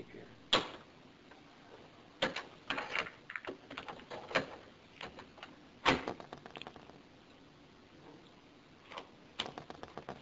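Scattered sharp clicks and knocks of objects being handled, with quiet gaps between. The sharpest comes about half a second in, a cluster follows a couple of seconds later, and another knock comes about six seconds in.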